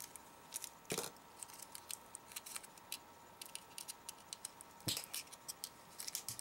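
Faint clicks and crinkles of a small taped-shut plastic packet being cut and picked open with a blade. There is a sharper snip about a second in and a couple more near the end.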